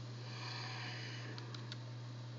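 Steady low electrical hum from the computer setup, with a soft breath about half a second in and two faint keyboard key clicks near the end.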